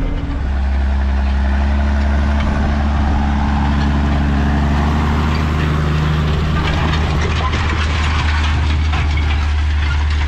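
Massey Ferguson 6290 tractor's diesel engine running steadily under load, pulling a Triple K spring-tine cultivator through stony ground, with wind noise on the microphone.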